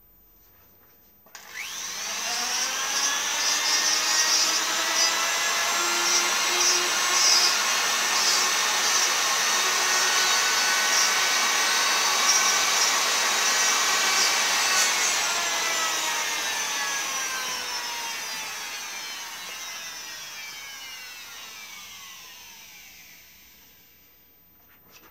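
Flexible-shaft rotary tool spinning up with a rising whine, running steadily for about thirteen seconds while its bit works the wooden shank, then switched off and slowly winding down with a falling pitch.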